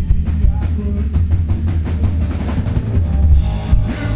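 Live hard rock band playing loudly, drums to the fore, heard from within the audience with a heavy, booming low end.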